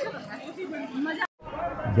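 Faint chatter of people's voices that cuts out abruptly about a second and a half in, followed by the even rush of flowing river water and a man starting to speak near the end.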